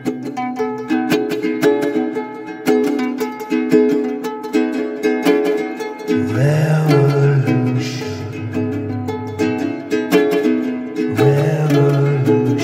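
Ukulele played in a wordless passage, with quick plucked notes in a repeating figure. A low held note joins about halfway through and comes in again near the end.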